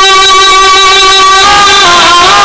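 A male voice singing a Bangla Islamic song (gojol) into a microphone. He holds one long, steady note, then moves on to a new pitch about one and a half seconds in.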